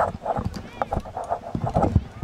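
Distant voices of a group of players on the field, over irregular low knocks and thumps.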